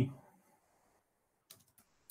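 A single faint computer keyboard keystroke about one and a half seconds in, otherwise near quiet.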